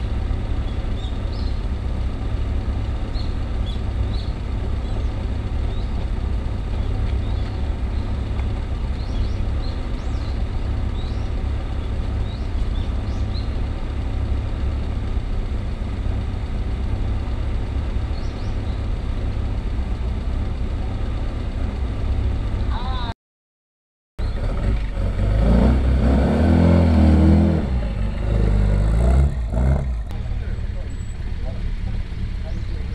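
Classic car's engine revving hard as it climbs the hill toward the microphone, its pitch rising and falling with the throttle and loudest near the end. Before that, a steady low rumble with faint high chirps.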